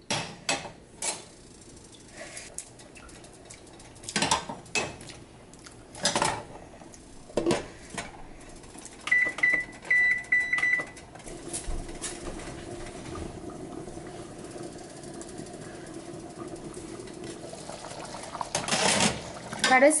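Cookware knocks and clinks as a ladle and a glass lid are handled on a metal soup pot. About nine seconds in come three short high beeps, like a cooktop's controls. They are followed by a steady low hum as the covered chicken soup simmers.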